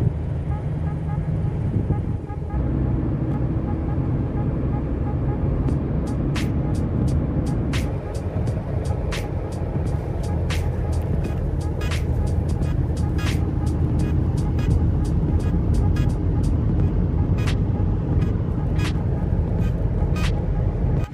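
Steady engine and road noise from inside the cabin of a moving car, with short sharp clicks scattered through from about six seconds in.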